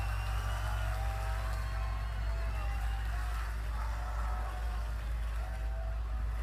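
Live concert audio played back faintly: a crowd at the end of a song, with faint music and pitched voices over a steady low hum.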